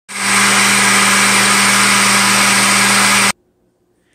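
Countertop blender motor running steadily and loudly as it blends a jar of liquid vegetable juice, a steady hum under the whir of the blades; it cuts off suddenly a little over three seconds in.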